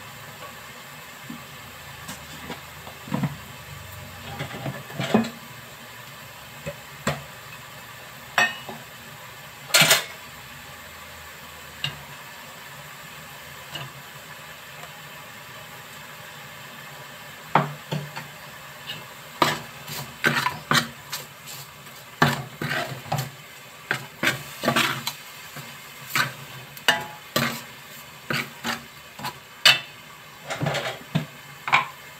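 Metal ladle knocking and scraping against a large metal cooking pot as a rice-and-vegetable mixture is stirred. Scattered strikes at first, one louder clank about ten seconds in, then rapid, repeated scraping and clinking through the second half.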